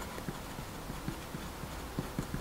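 Pen writing on grid paper: a quick, uneven run of soft strokes and taps, several a second, as a word is written out.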